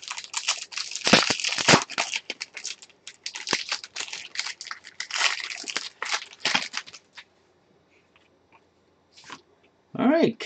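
Foil trading-card pack crinkling and tearing as it is opened by hand, a dense crackling rustle that stops about seven seconds in, with one brief rustle near the end.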